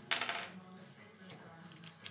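A brief metallic jingle of small metal hardware clinking together, about a tenth of a second in and over within half a second, followed by a few faint ticks.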